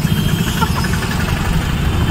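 Rickshaw engine running with a steady low rumble, heard from the open passenger compartment amid street traffic.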